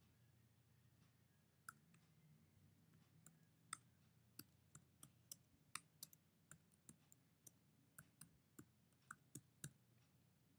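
Faint key clicks from a computer keyboard being typed on. The taps are irregular at first, starting about two seconds in, then come two or three a second through the second half.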